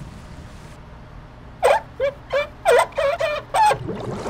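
A chicken clucking: a quick run of about seven short clucks that starts about one and a half seconds in and lasts about two seconds.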